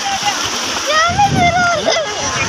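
Shallow sea surf washing and splashing at the water's edge, with people's voices over it.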